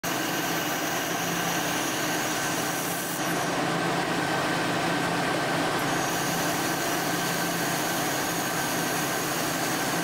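Cobot-held laser welder at work on steel: a steady hiss with a constant machine hum beneath it. The sound shifts in character about three seconds in and again near six seconds.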